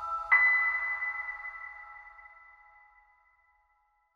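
Closing logo music sting: a bright, bell-like chime note struck about a third of a second in, ringing out and fading away over about three seconds.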